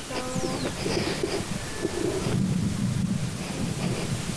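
Wind buffeting an outdoor microphone: a loud, uneven low rumble that grows stronger about two seconds in. A brief pitched hum-like sound sits just at the start.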